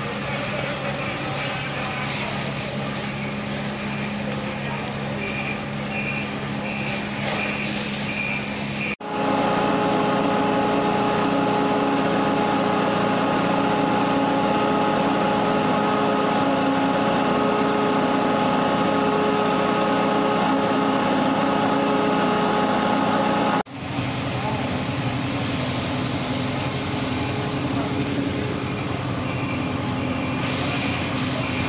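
Fire engine running steadily with a low engine hum. A short run of evenly spaced beeps comes about seven seconds in. After a cut about nine seconds in, a louder stretch carries a steady higher-pitched machine hum for about fifteen seconds before the low hum returns.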